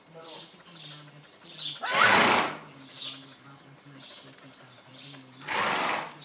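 Australian Cattle Dog puppies play-wrestling, with two loud, short, noisy bursts of breath or voice, about two seconds in and near the end. Faint high chirps come between them.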